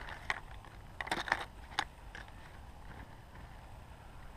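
Rummaging through a soft tackle bag: a few short rustles and clicks of gear being shifted, bunched in the first two seconds, then quieter handling.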